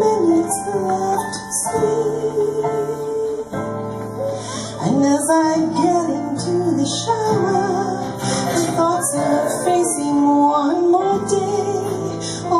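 Live band: a woman sings the lead melody into a microphone over strummed acoustic guitar and electric bass.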